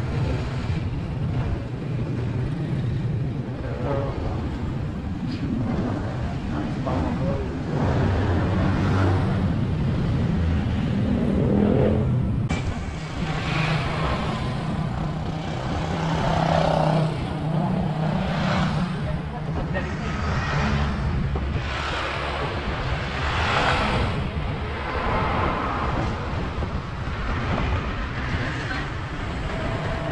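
A vehicle's engine running steadily under road and traffic noise while riding along a street, with swells from passing traffic.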